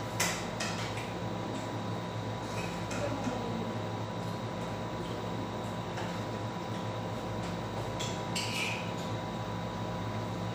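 A few light clinks and clicks of tableware being handled, the clearest just after the start and about eight seconds in, over a steady hum.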